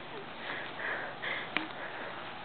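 A person's breathing after laughing: three short, breathy puffs about half a second apart, with a single sharp click a little after the middle.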